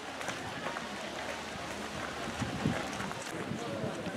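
Indistinct voices of a group of people talking, with scattered footsteps on gravel.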